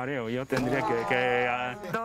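A person's voice: a few quick syllables, then a long, drawn-out vocal sound held for about a second and a half.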